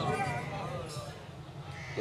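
A pause in an amplified sermon: the preacher's voice echoes away in a large hall, leaving faint quavering voices over a low steady hum from the sound system.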